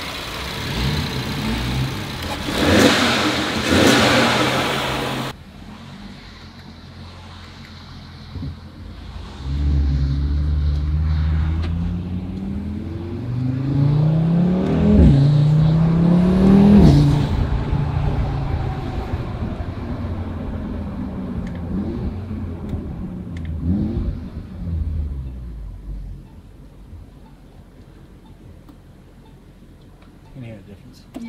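Audi TT RS turbocharged five-cylinder engine fitted with an APR carbon-fibre intake. A loud burst of engine and intake noise cuts off suddenly about five seconds in. The engine is then heard from inside the cabin pulling away, its pitch climbing and dropping sharply at two upshifts before it eases off and settles to a low hum.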